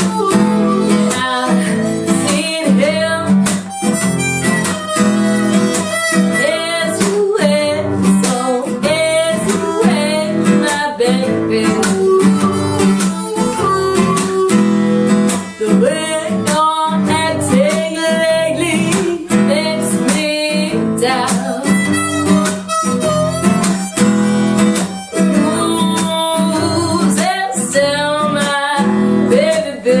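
Blues harmonica playing a bending melodic line over a strummed acoustic guitar, in an instrumental break of an acoustic blues song.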